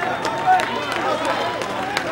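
Arena crowd shouting and cheering, many voices overlapping at once, as a fight in the cage is stopped by a submission.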